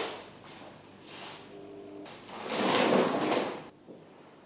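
A rolled rug being handled and unrolled on wooden floorboards: a brief scrape at the start, then a louder, longer rustling sweep about two and a half seconds in that stops suddenly.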